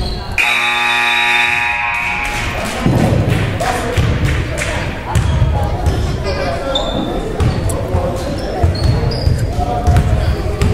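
Gym scoreboard buzzer sounds once, a steady tone lasting about two seconds, stopping play. After it, voices and the thuds of basketballs bouncing on the hardwood fill the echoing gym.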